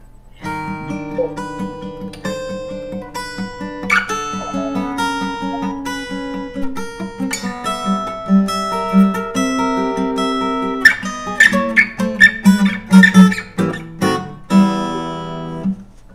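Fingerstyle acoustic guitar piece: a picked melody over a steady bass line, growing busier with sharper plucks and strums from about two-thirds of the way through, then stopping just before the end. It is a pre-recorded guitar track played over the video call while the guitarist mimes along.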